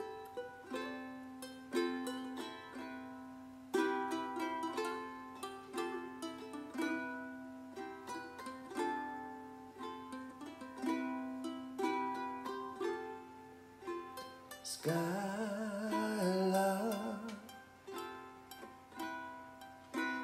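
Ukulele playing a slow chordal introduction, with chords plucked about once a second. About three quarters of the way in, a male voice comes in singing a long, wavering held "Sky" over the chords.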